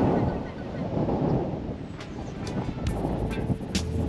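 Wind rumbling on the microphone in a gap in the background music, with a few faint clicks; the music's tail fades out at the start.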